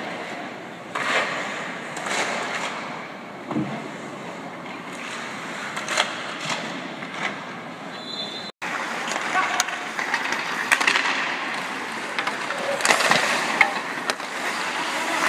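Ice hockey skates carving and scraping on the ice, with sharp clacks of sticks striking pucks scattered throughout. The sound cuts out for an instant just past halfway.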